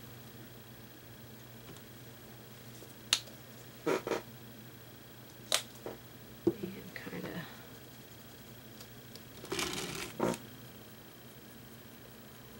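A few scattered light clicks and taps of a brush and painting supplies being handled on a work table, over a steady low hum.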